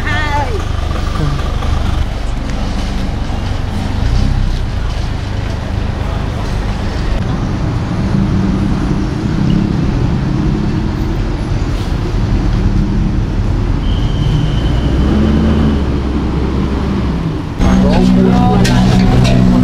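Street traffic noise: motor vehicles running close by with a steady low engine drone, and brief snatches of people's voices. Music comes in just before the end.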